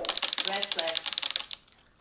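Rapid typewriter clicking sound effect, about a dozen keystrokes a second, that cuts off suddenly about a second and a half in.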